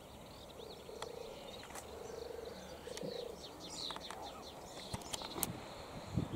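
Melodious warbler singing a fast, chattering run of short high notes that grows denser and louder in the second half. A few sharp clicks come near the end, and lower repeated notes run underneath in the first half.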